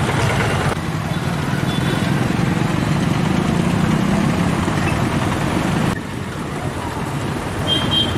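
Road traffic noise: a steady rumble of passing vehicles on the street, with a short high beep near the end.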